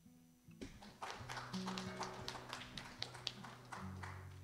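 Soft held chords from a worship band's keyboard and guitar, with a run of irregular taps and knocks over them: footsteps of several people walking across a stage.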